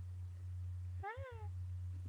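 A single short, high-pitched call that rises then falls in pitch, about a second in, over a steady low electrical hum.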